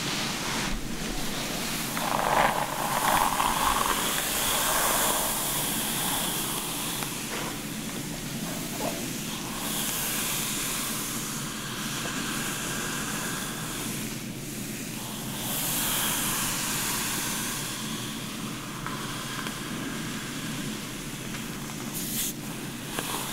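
Brush bristles and fingers drawn through long, dry hair: a soft rustling hiss that swells with each slow stroke.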